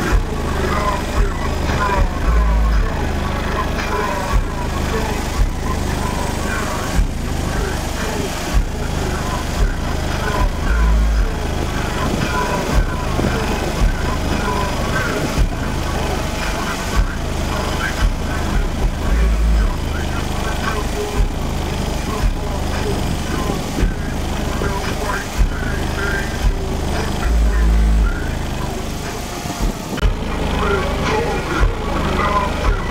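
Bass-heavy music with vocals played loudly through a car audio system driven by two 18-inch SMD subwoofers, heard from outside the vehicle by the open hood. A sharp beat runs throughout, and a long deep bass note comes in about every eight seconds.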